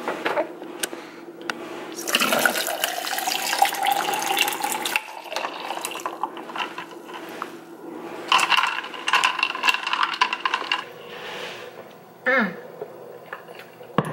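Hot steeped tea poured from a mug into a clear plastic tumbler of ice, in two pours a few seconds apart. The pitch of the first pour rises as the tumbler fills.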